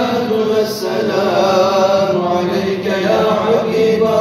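A man's voice chanting an Islamic religious recitation in long, wavering held notes.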